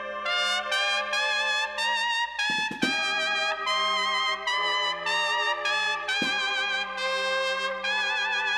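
A Spanish Holy Week processional march (marcha procesional) played by a band. Trumpets carry a slow melody with vibrato over sustained lower brass notes, with a few sharp strikes about two and a half seconds in and again after six seconds.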